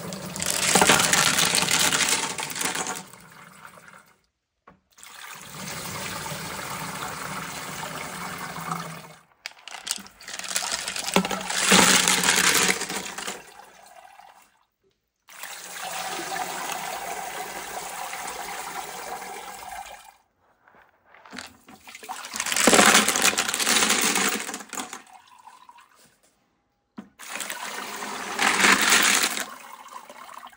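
Spent grit slurry and tumbled rocks poured out of rock tumbler barrels into a stainless steel colander over a bucket: wet splashing and sloshing in about six separate pours a few seconds each, split by short silent breaks.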